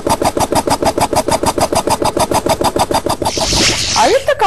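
Compressed-air engine of a small experimental vehicle running, puffing in rapid even pulses, about ten a second. A rushing hiss rises near the end.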